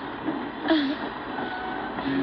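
Steady running noise of a moving train, with a short vocal sound from a woman about a third of the way in.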